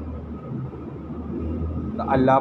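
A short pause in a man's talk, filled by a steady low background hum or rumble.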